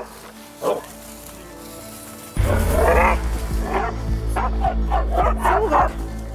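Mixed-breed dog barking repeatedly in quick, sharp barks while lunging on its leash at other dogs; this is leash reactivity that the trainer reads as insecurity rather than aggression. Background music comes in suddenly a little over two seconds in and runs under the barking.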